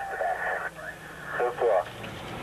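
A voice coming over a fire apparatus two-way radio, a few short thin-sounding phrases.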